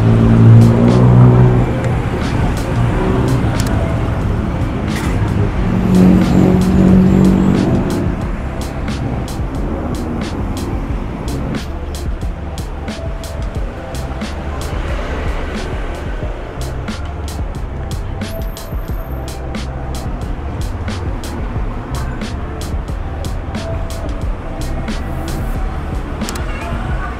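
Motorbike engines running close by, loudest in the first two seconds and again around six to eight seconds in. After that comes background music with a steady beat over street traffic.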